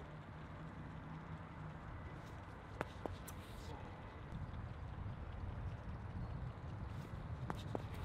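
Quiet outdoor ambience: a low steady rumble with a few faint sharp ticks, a pair about three seconds in and another pair near the end.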